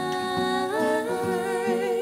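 Live acoustic performance: sung vocals holding long notes over a strummed acoustic guitar, the held notes stepping up in pitch about two-thirds of a second in.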